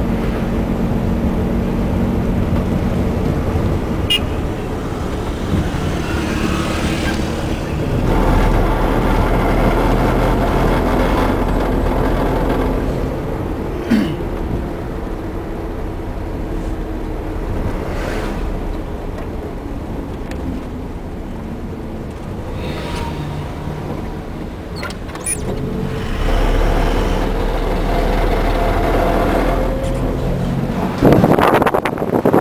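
A taxi's engine running, with road noise, heard from inside the cabin as it drives. The sound grows louder about eight seconds in and again near the end.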